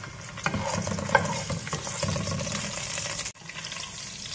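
Lemongrass stalks and bruised galangal sizzling in hot oil in a non-stick pot, stirred with a wooden spatula that gives a few light knocks against the pot. The sound drops out briefly a little past three seconds in.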